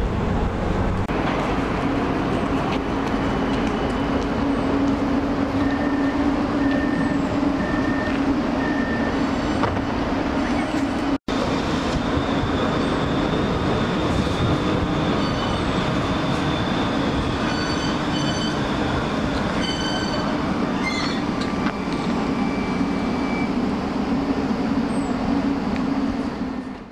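Pesa Fokstrot low-floor tram running with a steady low hum, heard first from inside the passenger cabin, with four short evenly spaced beeps about a third of the way in. It is cut off abruptly and followed by the tram heard from trackside, with several thin steady tones over the running noise.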